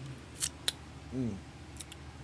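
Handling noise: a short rustle about half a second in, then a sharp click, followed by a brief hum from a man's voice and a couple of faint ticks near the end.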